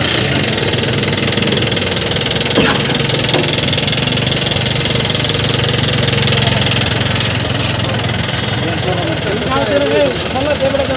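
A motor vehicle's engine idling steadily close by, with the voices of a crowd around it. A single sharp knock about two and a half seconds in, and a voice rising near the end.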